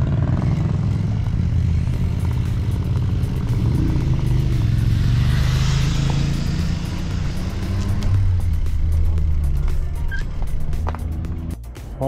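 Motor vehicle traffic running past on the road, a motorcycle among it, with a steady low rumble that swells about halfway through; background music plays underneath.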